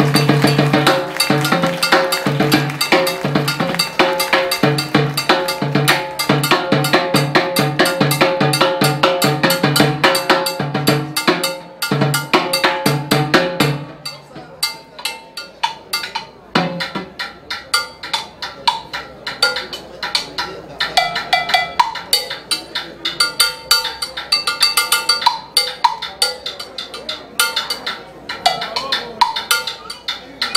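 Solo timbales played with sticks, with strokes on the drum heads and shells and on a mounted plastic block and cowbell. For about the first half the playing is dense and rapid with full drum tones; it then drops to softer, sparser strokes for the rest.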